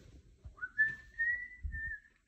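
A person whistling one note that slides up at the start and is then held steady for over a second.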